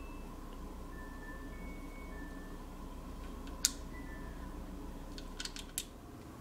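Quiet workshop room tone with a steady low hum, broken by one sharp click a little past halfway and a few light clicks near the end.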